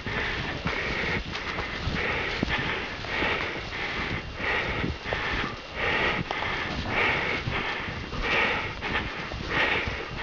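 A runner's hard breathing, about one breath a second, with footsteps ploughing through deep snow.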